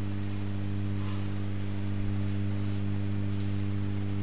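Steady electrical mains hum from a microphone and public-address sound system, a low tone with several even overtones above it.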